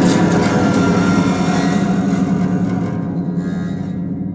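Ensemble of concert harps sounding a full chord, with a sharp attack at the start, then ringing on and slowly fading.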